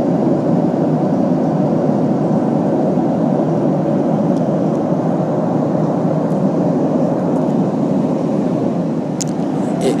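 Airliner cabin noise in flight: a loud, steady drone of engines and airflow heard from inside the passenger cabin, loud enough to drown out one's own voice.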